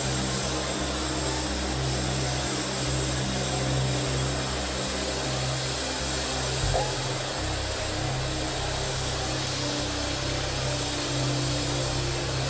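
Sustained low keyboard chords under a steady wash of sound from a large congregation praying aloud at once. The bass notes change a little past halfway.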